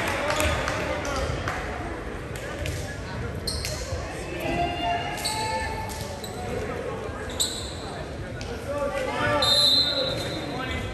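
Indoor gym sounds between volleyball points: players' voices calling and talking, a ball bouncing on the hardwood court, and several short high sneaker squeaks, echoing in the large hall.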